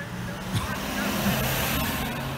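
Ambulance van driving past close by, its engine and tyre noise swelling to a peak about a second and a half in, then easing off. No siren.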